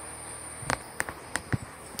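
A socket wrench on a long extension working the exhaust manifold bolts of a Cummins diesel: about six short, sharp metal clicks at uneven intervals through the second half.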